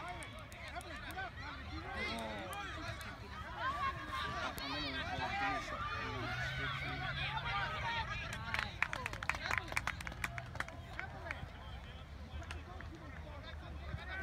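Distant shouts and chatter from youth soccer players and sideline spectators, many voices overlapping across an open field. A quick run of sharp clicks comes about nine seconds in.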